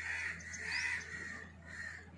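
Birds calling: a few short, harsh cawing calls in quick succession, over a steady low hum.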